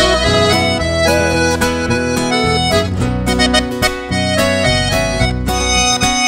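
Instrumental break of an acoustic sertanejo band: a Scandalli piano accordion plays the lead melody in quick runs of notes over strummed acoustic guitars and a steady bass line.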